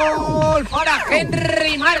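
A Spanish radio football commentator's long held goal cry ending about half a second in with the pitch sliding sharply down, followed by rapid excited shouting.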